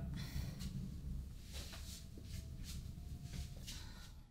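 Faint, soft, irregular taps, about two or three a second, over a low room hum.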